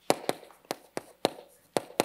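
Chalk tapping against a chalkboard as a word is written: a run of about eight sharp, irregular taps, one at the start of each stroke.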